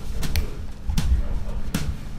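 A few dull knocks and thumps, about four in two seconds, over a steady low hum.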